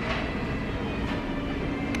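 Steady rumbling ambience of a shop interior, with a faint low steady hum.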